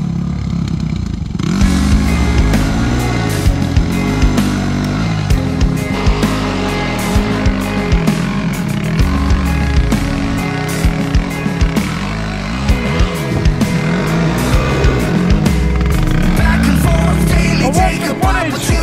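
Dirt bike engines revving up and down as riders work through a deep eroded rut on a dirt hill climb, mixed with background music.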